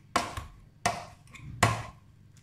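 Metal potato masher knocking through boiled potatoes against a stainless steel saucepan: three sharp knocks about 0.7 s apart.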